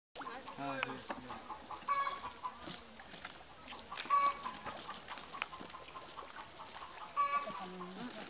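Chickens clucking several times, with people's voices and scattered small clicks in between.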